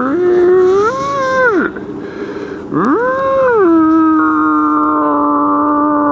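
Elk bugle calls: a rising-and-falling call of about a second and a half, then after a short gap a second call that rises, drops and settles into a long steady held note for the last couple of seconds.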